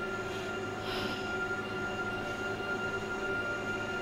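A steady drone of several held tones, low and high together, as an eerie music bed, with a faint breathy swell about a second in.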